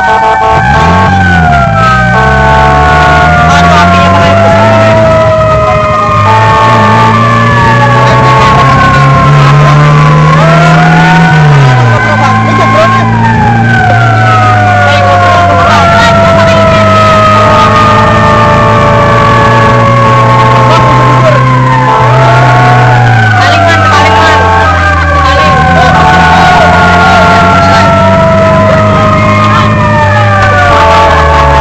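Several emergency sirens wailing at once, their pitches sliding slowly up and down and overlapping, with an on-off two-tone pattern among them. Beneath them a vehicle engine climbs in pitch and drops sharply twice, as on gear changes.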